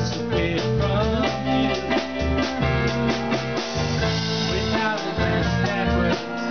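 A live rock band playing a song's opening passage: electric guitar, bass, drum kit and stage piano together, with a steady beat.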